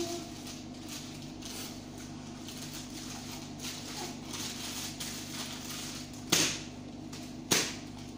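A small plastic bag crinkling in a child's hands, then two sharp cracks from the bag about a second apart near the end.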